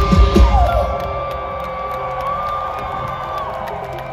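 A live rock band's final loud drum and bass hits, which stop about a second in, leaving a held high tone ringing out and slowly fading over crowd cheering.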